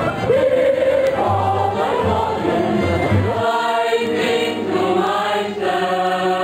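Amplified group singing by two women and a man, over a pulsing bass backing. About three and a half seconds in, it gives way to sustained choir-like music with long held chords.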